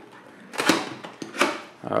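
A cardboard box being slit open with a serrated knife and its lid flaps pulled free: two short rasping scrapes less than a second apart.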